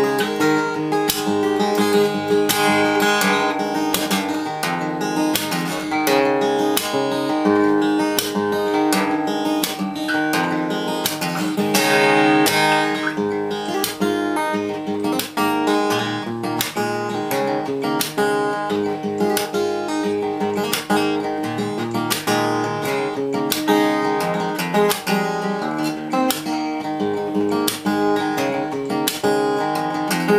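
Solo fingerstyle playing on a cutaway acoustic guitar, with notes picked in quick succession and left ringing into one another.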